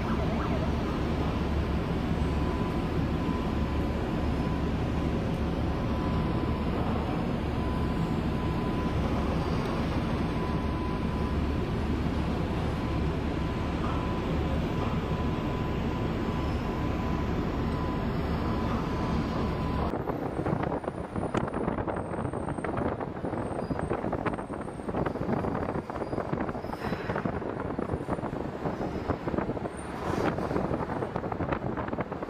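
Steady low rumble of a heavy vehicle engine with a faint high tone over it. About two-thirds through it cuts abruptly to a rougher, gusty noise, with wind buffeting the microphone.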